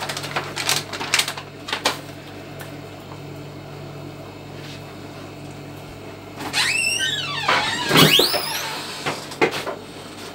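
Plastic food packets being handled, with a few crinkles and clicks in the first two seconds over a steady low hum. From about six and a half seconds in comes a loud squeaking creak that slides up and down in pitch, peaking with a knock about eight seconds in.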